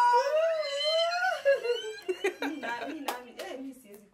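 A long, high-pitched squealing voice that wavers up and down in pitch, giving way after about a second and a half to broken laughter. A few sharp clicks come near the end.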